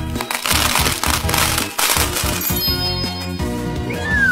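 Sound effect of many small balls clattering and rattling as they pour into a blender jar, lasting about two seconds, over background music.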